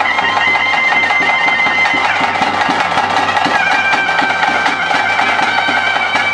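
Ritual music: a reed pipe playing long held notes, changing pitch twice, over continuous fast drumming.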